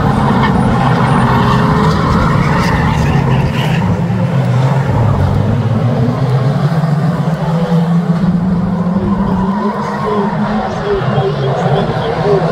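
A pack of 2-litre National Saloon stock cars racing, many engines running together in a dense drone whose pitch rises and falls, easing slightly in loudness near the end.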